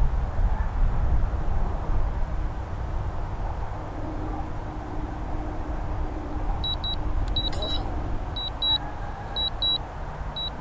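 Wind buffeting the microphone with a steady low rumble. From about two-thirds of the way in, a DJI drone remote controller beeps in high double beeps, about one pair a second, the alert that the Mavic 2 Zoom is returning to home.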